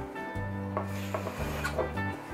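Background music with a steady bass line, under light rubbing and rustling as hands handle craft materials on the work table.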